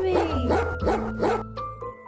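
Cartoon dog barking sound effect: a quick run of short barks over the first second and a half, over light background music.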